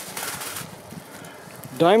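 Faint scrape and rustle of a steel shovel moving through dry, sandy soil as a scoop of dirt is lifted from a small hole, a little louder about half a second in. A man's voice starts loudly near the end.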